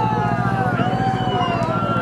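Several people whooping and hollering in long, drawn-out calls that rise and fall, voices overlapping, as they cheer a boot-toss throw. A steady low hum runs underneath.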